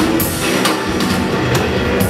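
Live rock band playing loudly: a drum kit with repeated hits and a guitar.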